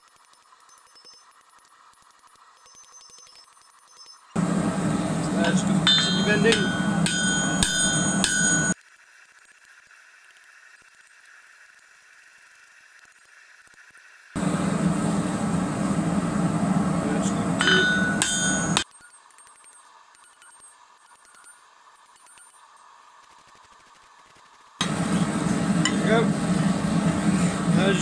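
Three bouts of hammer blows on a red-hot steel bar over an anvil, bending its end down, with some strikes ringing out. Each bout lasts a few seconds and is separated from the next by a quiet gap.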